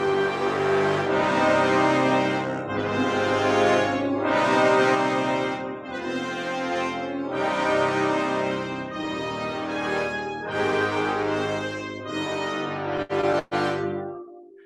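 Isolated brass section stem of an orchestral film score (horns, trombones and trumpets) playing sustained, full chords in phrases, with a Russian flavour. Near the end the playback breaks up briefly and stops.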